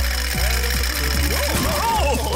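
A small propeller plane's engine buzzing steadily as a cartoon sound effect, under background music with many swooping up-and-down glides.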